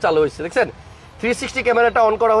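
A man talking, with a short pause about a second in.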